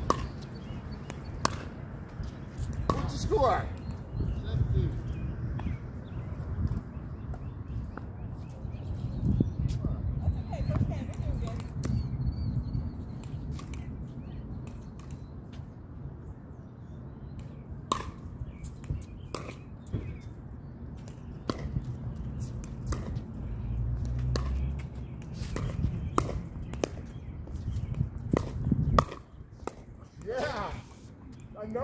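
Pickleball rally: sharp, hollow pops of paddles striking a plastic pickleball, coming irregularly and more often in the second half, over a steady low rumble.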